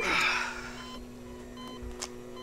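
A swoosh with a falling pitch at the start that fades within about a second. It leaves a low, steady electronic hum with a few faint short beeps.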